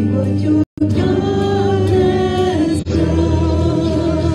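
Live worship music: women singing into microphones over a band of piano, electric guitars and bass. The audio cuts out completely for a split second just under a second in.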